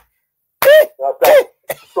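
A person coughing: two loud coughs about half a second apart, then a short third one.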